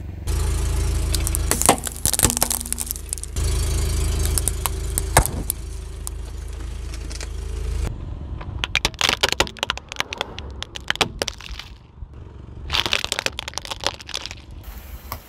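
A car tyre rolling slowly over hard plastic toys, crushing them with runs of sharp cracks and snaps. For the first half the car's engine runs under it as a steady low rumble, broken off briefly about three seconds in. From about eight seconds the cracking comes thick and fast, with another burst near the end.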